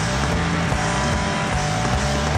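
Rock band playing live: a loud, distorted electric guitar and bass riff with notes sliding up and down in pitch.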